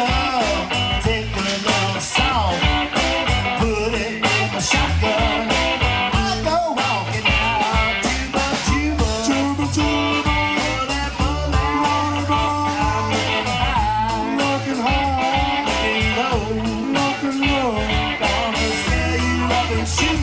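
A live blues-rock band playing: acoustic guitar, electric bass and a drum kit keeping a steady beat, with a man singing the lead vocal.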